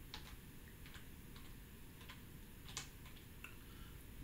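A few faint, scattered computer keyboard keystrokes, the loudest about three quarters of the way through, over a quiet room background.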